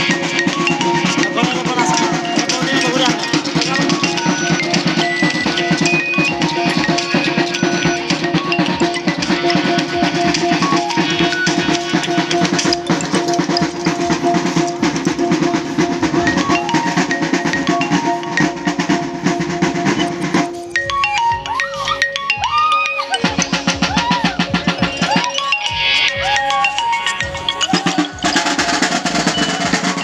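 Maguindanaon gong-and-drum music for the sagayan dance, played fast with dense, steady beats over ringing gong tones. About twenty seconds in, the low ringing tones drop out and the playing thins for a few seconds before filling out again near the end.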